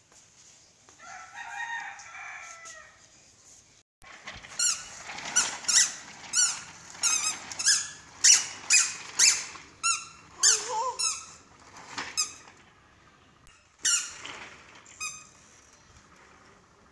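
Squeakers in a toddler's squeaky shoes, squeaking over and over as the baby steps along in a walker: short high squeaks, each falling in pitch, about one to two a second.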